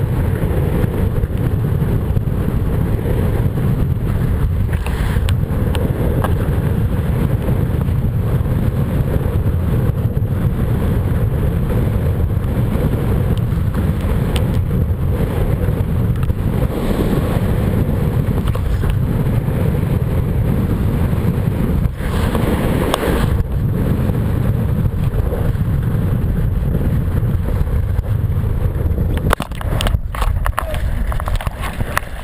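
Heavy wind rumble on the microphone of a kiteboarder's action camera as the board rides across choppy water, with a few short hisses of spray and water chop, the strongest about three-quarters of the way through.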